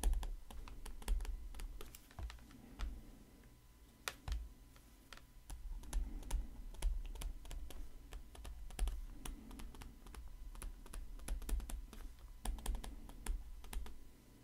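Stylus tapping and scratching on a tablet screen during handwriting: a quick, irregular run of small clicks with soft low bumps.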